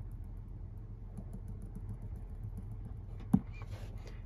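Low steady hum with faint scattered ticks, and one sharp tap of a finger on the display's touchscreen a little over three seconds in.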